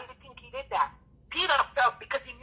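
Speech: a person talking.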